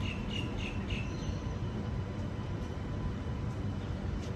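Steady low rumble of an electric passenger train approaching the platform. A run of short high chirps, about three a second, stops about a second in.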